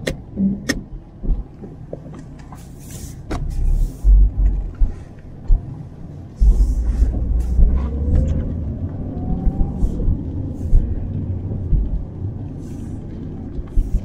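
Ford Fairmont AU heard from inside the cabin while driving on a wet road: a steady low engine and road rumble that grows louder about six seconds in. A few sharp clicks sound near the start.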